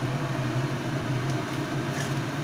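Watery tomato-and-spice masala simmering in a wok, its bubbling and sizzle over a steady low hum, with a faint tick of the metal spatula about one and a half seconds in.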